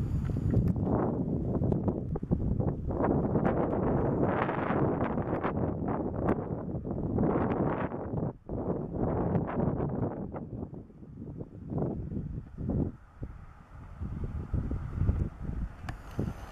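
Wind buffeting the camera's built-in microphone in uneven gusts, a rough rumble that eases and breaks up in the last few seconds.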